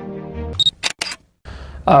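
Camera shutter sound effect: a short high beep, then a quick pair of sharp shutter clicks about half a second in, as the background music stops. After a moment of silence and a low hum, a man's reciting voice begins near the end.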